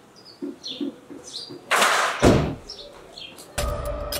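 Faint high bird chirps, then a sudden loud rushing noise with a low rumble under it, starting a little before halfway through and lasting about two seconds, with another loud noise near the end.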